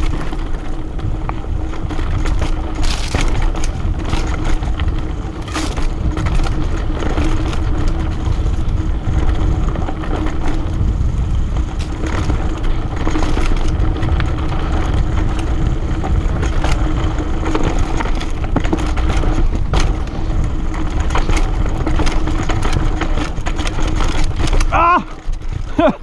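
Mountain bike rolling fast down a rough dirt trail: tyre noise over dirt and leaves, with the chain and frame rattling and many short knocks as the bike hits bumps and roots. Heavy wind on the microphone runs under it, along with a steady low hum.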